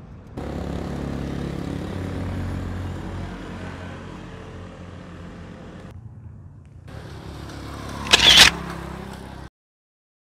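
A motor vehicle running on the road nearby, steady at first and then fading, followed by a short loud burst of mic handling noise about eight seconds in. The sound then cuts out to silence.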